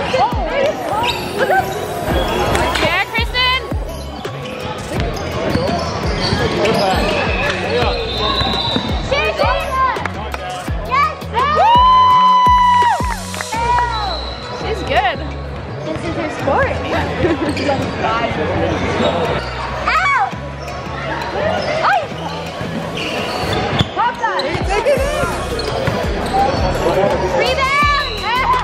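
Basketball game in a gym: a ball bouncing on a hardwood court and sneakers squeaking, loudest around the middle, under the voices of players and onlookers.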